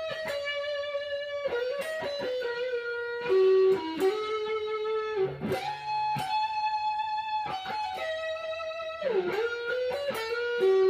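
Gibson Les Paul Junior Special electric guitar with P90 pickups playing a single-note lead line: held notes with long sustain, one ringing for over a second about six seconds in, and the pitch swooping down and back up twice.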